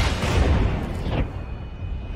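Movie battle-scene soundtrack: a dense, loud din of combat sound effects with a heavy low rumble, with music underneath.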